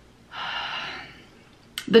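A woman's audible breath, about a second long, as she pauses trying to recall a word, followed near the end by a short mouth click.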